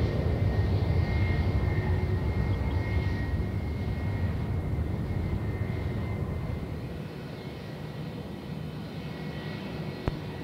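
Airbus A320-232 turbofan engines (IAE V2500) at taxi power as the airliner rolls onto the runway: a low rumble with a thin, steady high whine. The sound eases off about seven seconds in.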